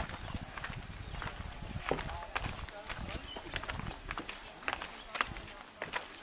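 People's voices in the background with scattered short clicks and taps over a low rumble.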